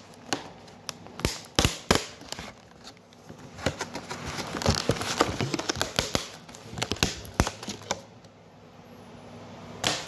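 Clear plastic clamshell salad container crackling and clicking as it is handled: a string of sharp, irregular clicks that thin out near the end.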